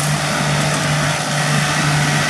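Kubota 9540 tractor running steadily under load as it pulls a Kubota center-pivot disc mower-conditioner through a standing hay crop: a constant low engine hum with a steady hiss of the mower working.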